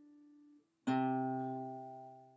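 Acoustic guitar playing single notes of a slow bass-line riff: an open-string note dies away and is damped about half a second in, then a lower note, third fret on the fifth string, is plucked just before a second in and rings on, fading.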